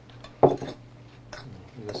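Metal spoon clinking and scraping against a ceramic bowl while mixing soaked soy protein with seasoning: a few short knocks, the loudest about half a second in.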